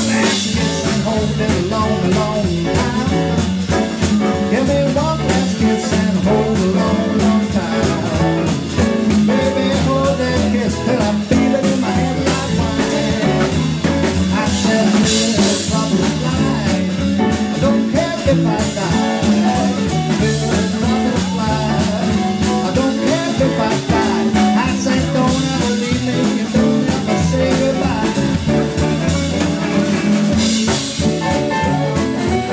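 Live blues band playing an instrumental passage of a jump blues number: electric guitar, organ, electric bass and a drum kit keeping a steady beat.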